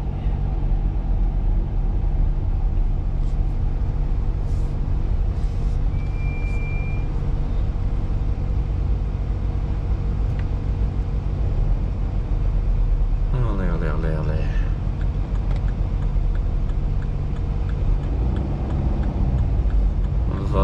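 Car engine and road noise heard from inside the cabin while driving, a steady low rumble with a constant engine hum. A single short high beep sounds about six seconds in.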